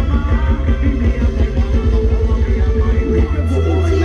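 A live band playing Thai ramwong dance music loudly, with a heavy bass and a plucked, guitar-like line over a steady beat.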